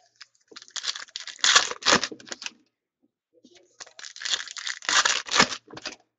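Foil trading-card pack wrappers being torn open and crinkled by hand, in two bursts of tearing and crackling about three seconds apart.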